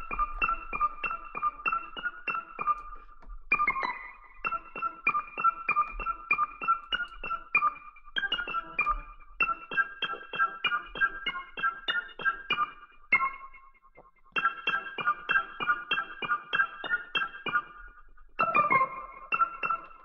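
A keyboard preset from the Stacks library for Native Instruments Kontakt playing on its own: quick, repeated high notes, about four a second, in short phrases broken by brief gaps, with no bass or drums under it.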